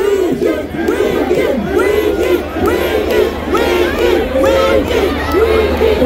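A large concert crowd shouting and cheering, many voices overlapping at once.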